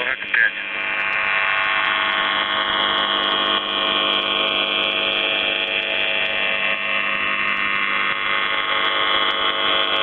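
The Russian military shortwave station UVB-76, 'The Buzzer', on 4625 kHz: its steady buzz tone as received over a shortwave radio. A brief chirp sounds just after the start.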